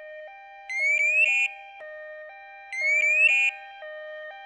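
Evacuaid emergency bracelet sounding its man-down alarm, set off because the wearer has stopped moving. Each cycle is two quick rising whoops and then a short buzzing burst. The cycle comes twice, about two seconds apart, over a low two-note tone alternating about twice a second.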